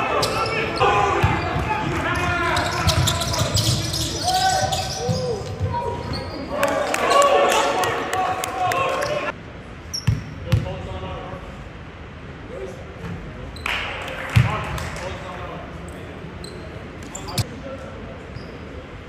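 Basketball bouncing on a hardwood court in a large sports hall, under players' voices and shouts during play in the first half. After a sudden drop in level about nine seconds in, a few separate bounces of the ball come as the shooter dribbles at the free-throw line.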